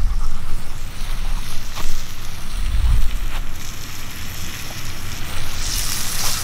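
Wind buffeting the camera's microphone, with low rumbling gusts at the start and about three seconds in, and a few faint knocks as the camera is swung around.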